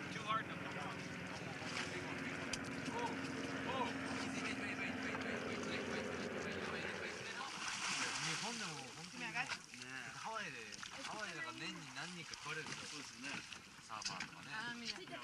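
Boat engine running steadily at idle with wind and water noise, then about eight seconds in a splash as a shark thrashes at the surface beside the boat, after which the engine hum drops away under excited voices.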